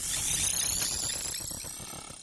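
Synthesized rising whoosh of an animated logo sting: several high tones sweep upward together over a low rumble, loudest just after it starts and fading away.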